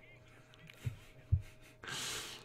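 Mostly quiet, with a couple of soft low puffs of breath, then a short breathy rush of air near the end: a man's stifled laugh breathed into a close microphone.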